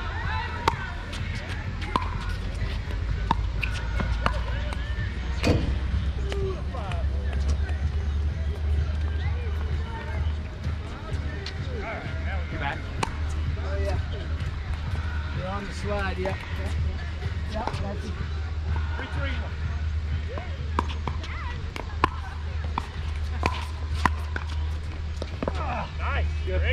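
Pickleball paddles striking a plastic pickleball in rallies, sharp pops a second or more apart, with the ball bouncing on the hard court, over a steady low rumble.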